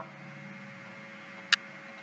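Quiet background room tone with a faint steady hum and hiss, broken once by a single short click about a second and a half in.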